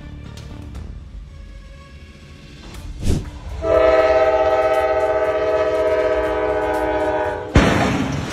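Diesel locomotive's air horn sounding one long steady warning blast of about four seconds as the train nears a blocked crossing, starting a little before midway. It is followed near the end by a sudden loud crash-like noise. Before the horn there is a low rumble.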